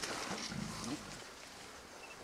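A low, throaty grunting call lasting about a second, rising in pitch at the end, with a brief rustle of leaves at the start.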